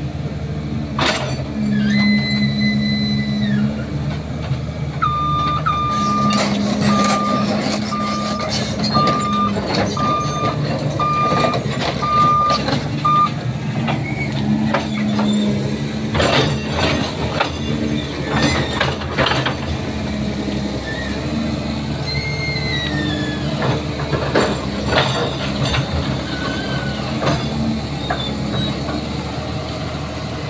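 Caterpillar hydraulic excavator running steadily under load, its alarm beeping about once a second for several seconds early on. Scattered knocks and clatters follow as concrete is broken up.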